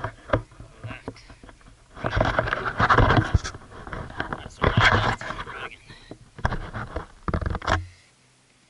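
Handling noise from a small action camera being picked up and repositioned: loud scraping and rubbing on its microphone in three bouts, about two, five and seven seconds in.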